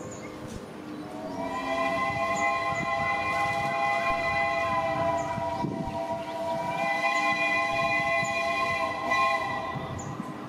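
Steam locomotive No. 824 sounding its multi-note chord whistle in a long blast, starting about a second in and held nearly to the end, wavering briefly about midway, over the low rumble of the approaching engine.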